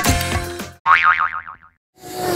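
Transition sound effect: a short burst of electronic music that stops under a second in, then a single tone that wobbles rapidly in pitch while sliding downward and fading out, followed by a brief silence.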